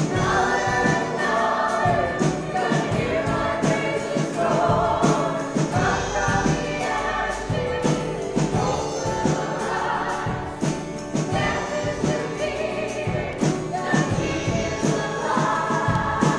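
A live church worship band playing a song, with strummed acoustic guitars keeping a steady beat under voices singing.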